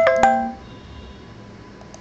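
A short two-note chime right at the start: two quick ringing dings about a fifth of a second apart, fading within half a second.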